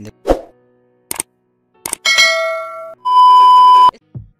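Edited-in sound effects: a thud just after the start, two short clicks, then a ringing metallic ding about two seconds in that fades over about a second, then a steady high beep lasting about a second near the end.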